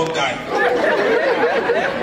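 Only speech: a man talking into a microphone, amplified through the hall's PA, with chatter in the room.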